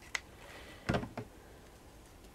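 Handling sounds of hands working on a fabric flower spray: a light click near the start, then a soft knock and a small tick about a second in, as the pieces are pressed onto the backing.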